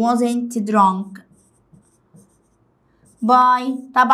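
A woman's voice speaking briefly at the start and again near the end. In the pause between, there is faint tapping and scratching of a stylus writing on the glass of an interactive whiteboard.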